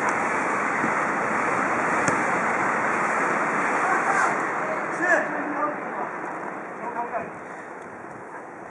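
Wind rushing over the camera microphone, strongest over the first few seconds and easing off toward the end.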